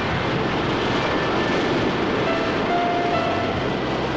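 Steady roar of ocean surf breaking on a beach, with faint music tones held underneath.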